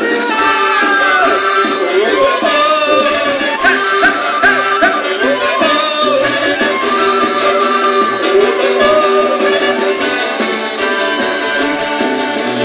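Live band music from a circus-style folk band playing on stage, with saxophone among the instruments and melody lines over a steady beat, heard from within the crowd. The sound is thin in the bass, with nothing below the low mids.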